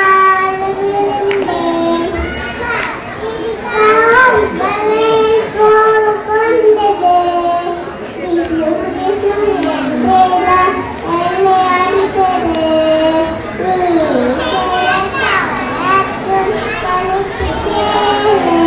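A group of young children singing a song together in unison, their voices amplified over a hall's sound system.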